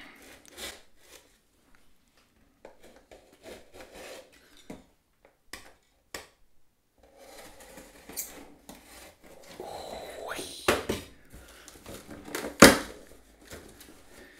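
Utility knife slicing the packing tape on a cardboard box, then the cardboard flaps being pulled open with rustling. Scattered small clicks come first, and two sharp knocks in the last few seconds, the later one the loudest.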